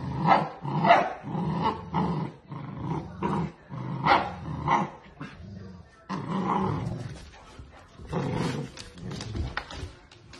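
Golden retrievers in a tug-of-war over a towel, a puppy against an adult: play growls and barks in a run of short bursts, with a couple of brief pauses.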